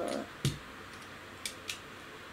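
Small hard clicks from a die-cast toy car being handled in the hands: one sharper knock about half a second in, then two light clicks near the end.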